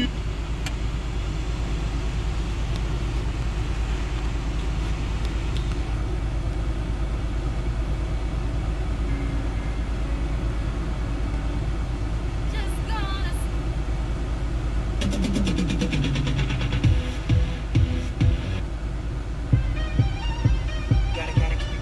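Ford Kuga's factory Sony car radio playing through the car's speakers, a broadcast of music and voice, with a steady low rumble underneath. About three seconds before the end, a regular thumping beat comes in.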